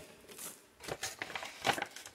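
Plastic and foil MRE ration pouches crinkling and rustling as they are handled and set down, in a run of short scattered crackles with the loudest one about 1.7 s in.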